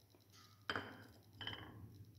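Two faint clinks against a glass bowl, each with a short ring, a little under a second apart.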